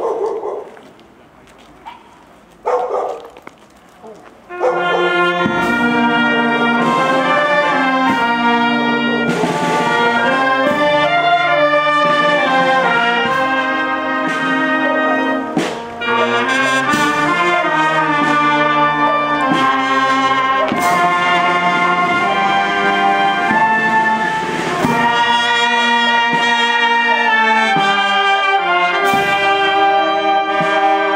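A marching brass band of trumpets, trombones, baritone horns, saxophones and clarinets starts playing about four seconds in and plays on steadily, with cymbal crashes now and then.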